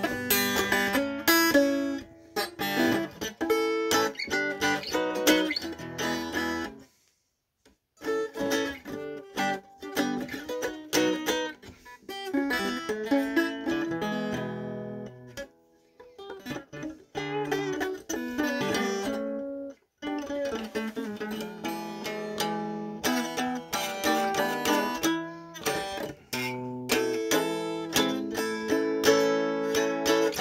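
Solo electric guitar improvising, picking single-note lines and chords. The playing stops briefly about seven seconds in, and dips again near fifteen and twenty seconds before carrying on.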